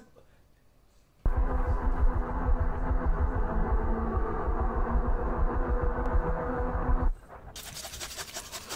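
Horror film soundtrack: a loud, dark droning score with a dense low rumble starts suddenly about a second in and cuts off abruptly near the end, giving way to a fainter high hiss.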